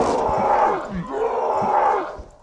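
Young men laughing and shouting loudly, their voices repeatedly swooping down in pitch.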